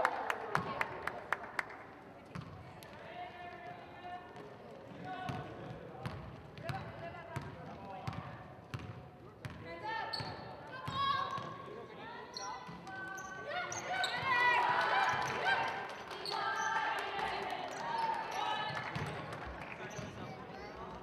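A basketball bouncing on a hardwood gym floor during play, with the dribbling densest in the first couple of seconds. Sneakers squeak at times, and players' voices call out across the reverberant gym.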